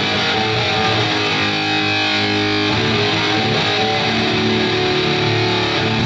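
Live hardcore band starting a song: loud electric guitar with distortion leading the music, with a change in the riff about three seconds in.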